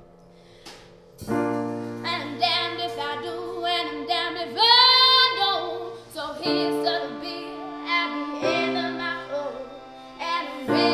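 Piano chords with a woman singing over them, her voice wavering with vibrato; the music comes in about a second in after a near-quiet pause, and a long held high note near the middle is the loudest part.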